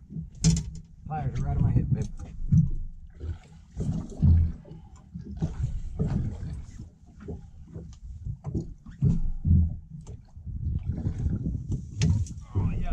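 Indistinct voices over an uneven low rumble, with scattered sharp knocks.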